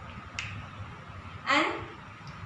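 A pause in a woman's speech: one brief, sharp click a little under half a second in, then the single spoken word "and", over a faint steady low hum.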